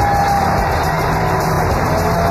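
Music, with a held note that fades about half a second in, over the steady cheering of a stadium crowd in a long standing ovation, heard through an old radio broadcast recording.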